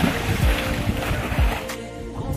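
A person jumping feet-first into a pond, the splash and churning water lasting about a second and a half, over background music with a heavy bass beat.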